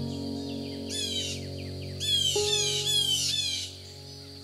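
Slow piano music with sustained notes, a new chord struck a little past halfway, layered with bird calls: a short run of quick, falling whistled notes about a second in, then a louder run of the same falling notes from about halfway until shortly before the end.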